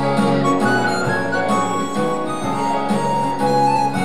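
A woman singing a hymn into a microphone over instrumental accompaniment, in long held notes that change every half second or so.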